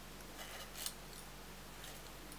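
A few faint, sharp clicks and a short scrape of cutlery on a plate, bunched about half a second in, with one more click near the end.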